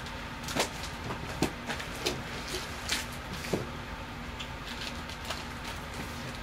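A stack of vinyl records being slid back into a record shelf, with a handful of short knocks and scrapes of sleeves over the first four seconds. Underneath is a steady low hum from the running furnace.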